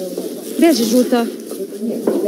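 Indistinct women's voices talking, their pitch rising and falling, loudest about halfway through.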